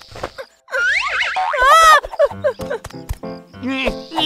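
Cartoon sound effects over children's background music: a springy, wobbling boing-like glide about a second in, followed by plucky musical notes and another sweeping glide near the end.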